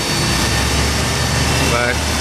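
Electric rotary polisher running steadily, used to polish a scratch out of window glass, with a steady low hum beneath it.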